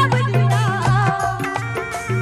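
Live Rajasthani folk-devotional music: a sung line dies away at the start, and a held, steady keyboard melody carries on over regular dholak drum strokes and a steady low note.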